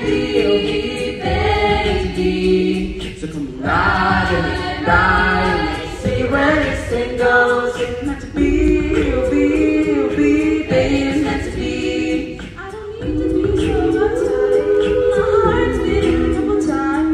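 High-school a cappella group singing in multi-part harmony, with voices alone and no instruments.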